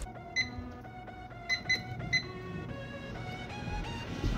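Microwave oven keypad beeping four times, short high beeps as it is set, over soft background music.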